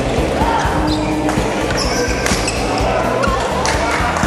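A badminton rally in an indoor hall: rackets hitting the shuttlecock and shoes squeaking on the court floor, with a sharp hit a little past halfway, over a steady hum of the hall and spectators.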